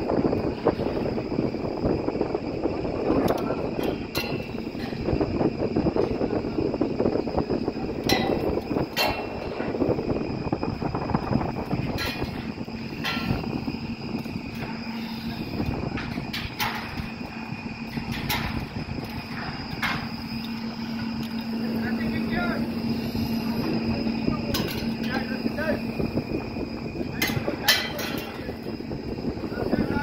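Steel bridge construction site: a steady machine hum under a noisy bed of wind and work, with sharp metal clanks about ten times, irregularly spaced.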